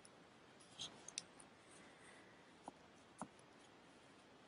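Near silence with a few faint clicks and rustles of a crochet hook and yarn being worked, as double crochets go into a magic ring: a small cluster of clicks about a second in and two more later on.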